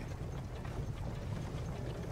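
Low steady rumble of a horse-drawn carriage in motion, heard from inside the cabin, with faint scattered clicks.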